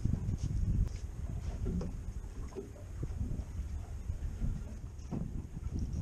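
Wind rumbling on the microphone of an open boat on choppy water, with water lapping at the hull and a few faint knocks.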